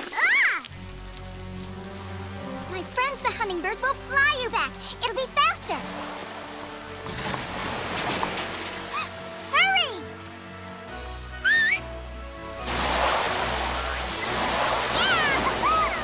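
Cartoon soundtrack: sustained music over a low bass line, mixed with flood water rushing and splashing that swells twice, the second time near the end. Short high chirps that rise and fall in pitch come again and again through it.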